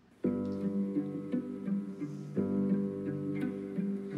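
An orchestra's strings playing slow, sustained chords. The music begins about a quarter of a second in, and a new chord is struck a little past halfway.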